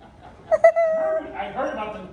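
A man's voice making a high, held whining note about half a second in, with a couple of sharp clicks at its start, then going on into talk.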